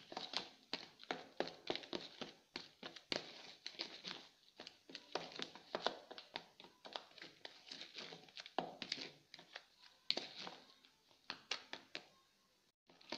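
A steel spoon stirring a dry flour mixture in a plastic bowl, scraping and tapping against the bowl in quick, irregular clicks, several a second.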